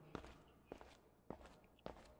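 Near silence with four faint, short taps at an even, walking-like pace, about half a second apart.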